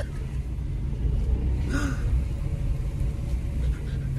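Steady low road and engine rumble of a car driving, heard from inside the cabin. A short, faint sound comes a little before halfway through.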